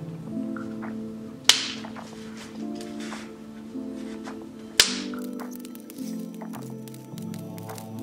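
Background music, with two sharp snaps about three seconds apart: a retractable steel tape measure snapping shut as it is used to mark out rigid foam insulation board.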